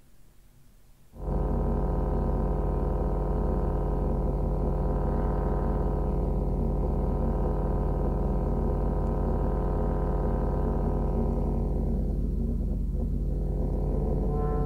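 Deep, steady electronic drone, many held tones layered over a strong low hum, coming in suddenly about a second in.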